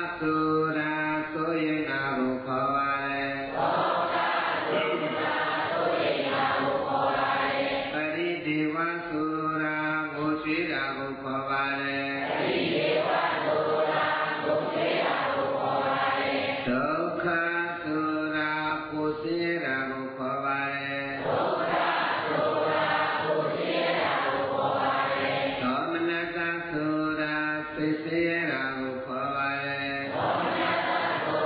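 Buddhist chanting: a continuous melodic vocal recitation with held notes, its phrase pattern recurring about every eight or nine seconds.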